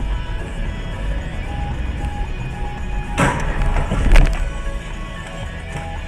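Background music over a car collision: a crunching noise about three seconds in, then a louder impact about a second later.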